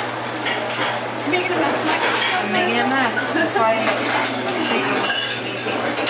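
Metal spoon stirring, scraping and clinking in a metal bowl of gin frozen fluffy with liquid nitrogen, with a brief ringing clink about five seconds in.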